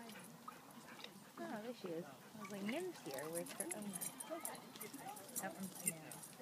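Faint voices of people talking at a distance, with light high clicks from about halfway through.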